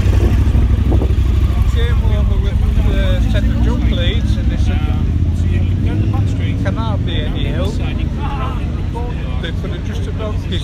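A steady low motorcycle engine rumble with a man talking over it.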